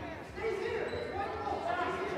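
Indistinct voices calling out, echoing in a large gymnasium.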